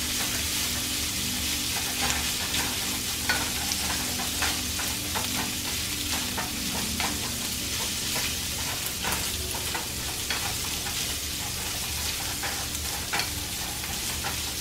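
Ground sausage sizzling steadily as it browns in a frying pan, with frequent short scrapes and taps of a spatula stirring and breaking it up.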